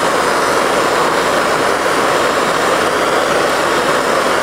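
Pneumatic air grinder running steadily with a pure brass wire wheel brushing torch-heated mild steel sheet, laying a brass coating on the metal: an even, unbroken hiss and whir, joined by the propane torch flame.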